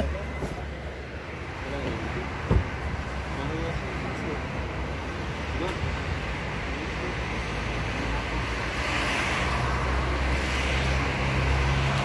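Steady road traffic noise with a low rumble, faint distant voices under it, and a single sharp knock about two and a half seconds in.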